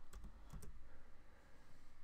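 A few faint computer keyboard keystrokes in the first second, a quick pair near the start and another pair about half a second in.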